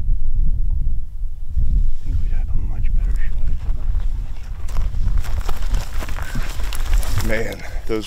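Wind buffeting the microphone, a loud, uneven low rumble, with scattered short crackles in the middle stretch. A man's voice starts near the end.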